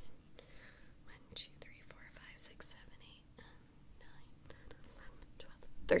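A woman whispering under her breath as she counts a row of knitted dishcloths one by one, with a few faint clicks from handling them.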